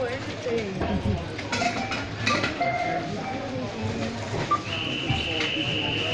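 Indistinct background voices at a supermarket checkout, with a few short electronic beeps. Near the end a steady high electronic beep sounds for nearly two seconds.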